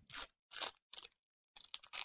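Foil wrapper of a Pokémon booster pack crinkling as it is handled, in about four faint short bursts.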